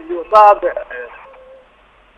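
A man speaking over a telephone line, his voice thin and narrow; he stops about a second in, leaving a short pause with faint line noise.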